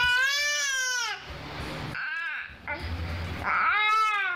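A seven-month-old baby making high-pitched vocal sounds: one long call at the start that drops in pitch as it ends, a short one about two seconds in, and another near the end.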